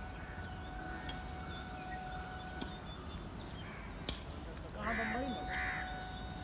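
Outdoor background noise with faint small chirps and a steady faint tone, then two loud harsh bird calls close together about five seconds in.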